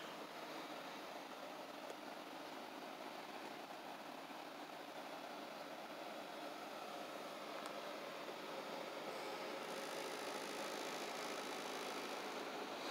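Faint, steady room noise: a low hum with hiss, with a couple of faint brief clicks.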